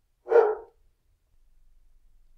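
A dog barking once, a short single bark a quarter of a second in.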